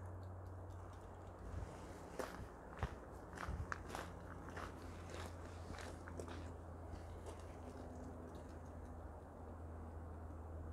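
Footsteps crunching on gravel, faint and irregular, thinning out after about seven seconds, over a faint steady low hum.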